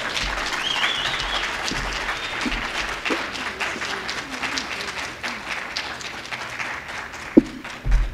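Audience applauding steadily, easing off slightly toward the end, with a single sharp knock near the end.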